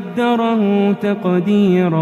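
Qur'an recitation: a solo voice chanting in long held notes that slide from pitch to pitch, with short breaks between phrases.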